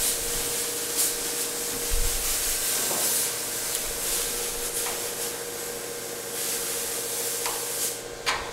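A steady hiss with a low, even hum under it and a few faint clicks; the hiss cuts off at the very end.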